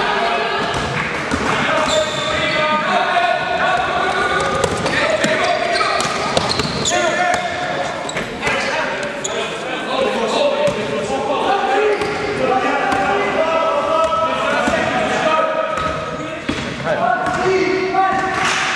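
Basketball game in an echoing sports hall: indistinct shouts and calls from players, with the ball bouncing on the court floor now and then.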